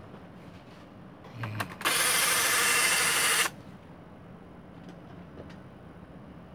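Thunderbirds secret-base toy playset being worked: a couple of clicks, then about a second and a half of loud, steady rushing noise that cuts off suddenly.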